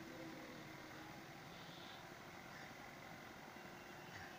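Near silence: a faint, steady background hiss with no distinct sound.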